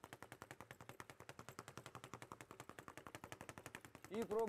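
Leather speed bag being punched and rebounding off its platform in a fast, even rattle of about ten knocks a second, heard faintly.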